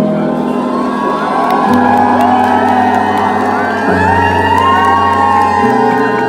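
Live band holding sustained chords, the bass note changing about every two seconds, while the audience cheers and whoops loudly over it, the calls building from about a second in.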